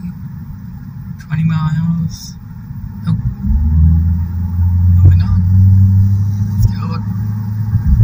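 Low rumble of a car driving on a highway, heard from inside the cabin, with a deeper steady hum joining about three and a half seconds in. Short snatches of a voice come through a few times.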